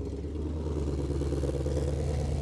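Ford Mustang Shelby GT500's supercharged 5.2-litre V8 running at low revs as the car pulls away slowly, a steady low exhaust note growing slightly louder.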